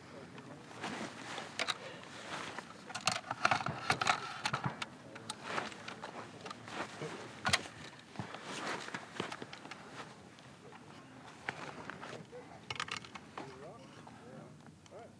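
Handling noise from a precision rifle and its tripod: scattered clicks, knocks and rustles as the rifle is lifted and set on the tripod. One sharper click comes about seven and a half seconds in.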